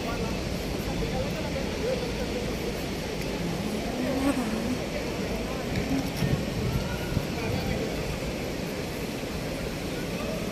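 Busy city street ambience: a steady hum of traffic and urban noise with indistinct voices of passers-by.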